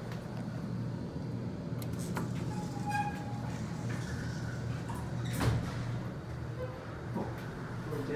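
Elevator car doors of a 1968 Westinghouse traction elevator sliding shut and meeting with a sharp knock about five and a half seconds in, over a steady low hum. A short tone sounds about three seconds in.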